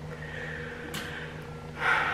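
A woman's sharp intake of breath near the end, over a faint steady hum, with a small click about a second in.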